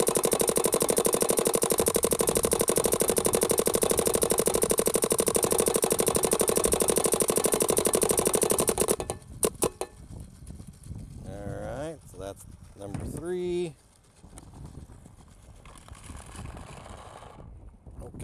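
Planet Eclipse Geo 4 paintball marker firing in ramping mode: a fast, unbroken string of shots for about nine seconds, then a few last single shots before it stops.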